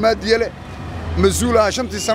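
A man talking, pausing for a moment about half a second in. Under his voice runs a steady low rumble of vehicle traffic, heard most plainly in the pause.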